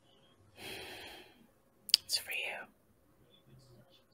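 A breathy exhale, then a short whispered word from a person's voice about two seconds in, preceded by a faint click.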